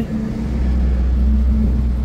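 A steady, loud low rumble with a constant hum, like a motor or engine running nearby.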